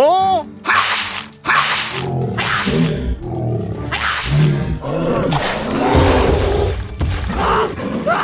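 Cartoon sound effects over background music: a voice's rising exclamation, then a string of short spraying bursts of water, then a dinosaur roar a few seconds later.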